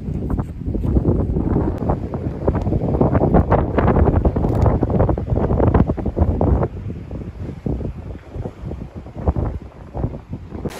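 Wind buffeting the microphone in loud, rumbling gusts with crackles, easing off about two-thirds of the way through.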